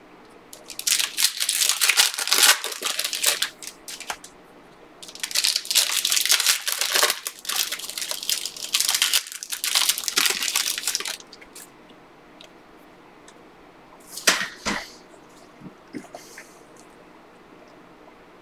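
A stack of trading cards being shuffled by hand, the cards sliding and slapping against each other in two long crackly stretches, then a brief shorter rustle near the end.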